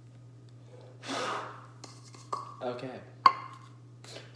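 A single sharp clink of kitchenware about three seconds in, the loudest sound, after a short breathy burst about a second in and a brief mumbled voice; a steady low hum runs underneath.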